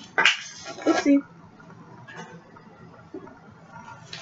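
A sharp click and a woman's short exclamation and single spoken word in the first second, then quiet room noise.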